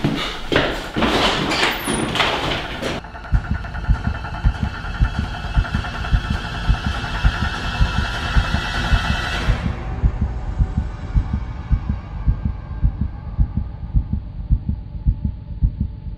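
Heartbeat sound effect: a regular low thumping, about two to three beats a second, from about three seconds in, under a held, dark music drone that fades out around ten seconds. The first three seconds hold a loud, noisy rush.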